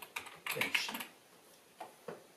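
Typing on a computer keyboard: a quick run of keystrokes in the first second, then a pause and one more keystroke near the end.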